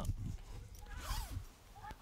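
Nylon tent door zip being pulled, a short rasping run about a second in, amid light handling of the tent fabric.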